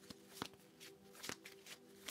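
Tarot cards being handled and shuffled, with a few faint scattered snaps and flicks over a low steady hum.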